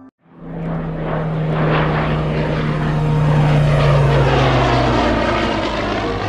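Piston-engined propeller aircraft flying past. The sound comes in suddenly, builds to its loudest about four seconds in, then eases slightly.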